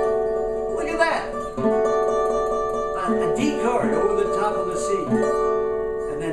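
Custom OME tenor banjo with a 12-inch head playing held chords that change about every second and a half, with a man's voice singing the melody over it.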